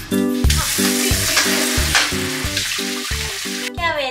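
Background music with a steady beat, over an even hiss that starts about half a second in and stops shortly before the end.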